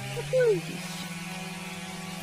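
A short voice exclamation with falling pitch, then a steady low buzzing drone like a small motor running.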